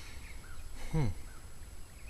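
A man's short "hmm", with a few faint bird chirps in the background over a low steady rumble.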